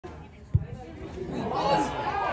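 A football struck for a free kick, one dull thud about half a second in, followed by spectators' voices and shouts growing louder as the shot goes toward goal.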